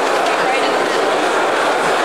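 Crowd chatter: many people talking at once in a large hall, a steady wash of overlapping voices with no single voice standing out.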